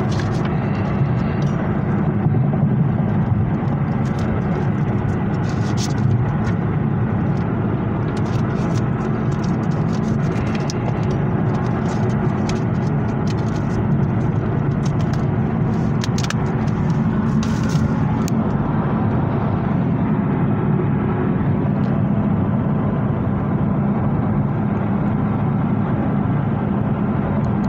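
Steady road and engine noise inside a moving car's cabin. Over the first two-thirds come short clicks and rustles of a plastic DVD case and its paper insert being handled.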